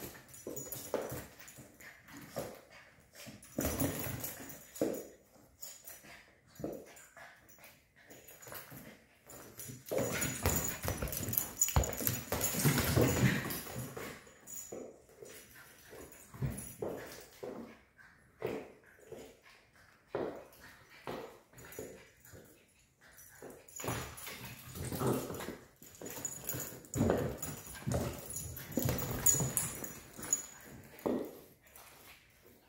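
Cairn Terrier puppy playing with a plastic ball on a hardwood floor: irregular knocks and clatter of the ball and the dog's paws and claws on the boards, with short dog vocal sounds now and then. The clatter is loudest for a few seconds around the middle.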